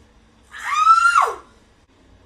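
A woman's high-pitched squeal lasting under a second, starting about half a second in: the pitch rises, holds, then drops sharply at the end.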